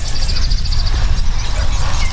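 Low, uneven rumbling of wind on the microphone outdoors, with a faint, fast, high chirping running over it.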